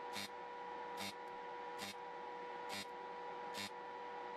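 TIG welder in its cold-weld mode, firing short powerful arc pulses onto steel: five faint snaps, evenly spaced a little under one a second, over a steady faint hum.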